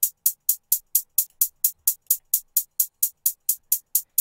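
Programmed closed hi-hats playing alone in an even run of about five short, sharp ticks a second, panned back and forth by the MAutopan auto-panner plugin.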